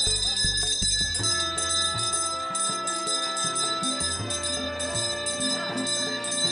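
A bell ringing steadily over background instrumental music.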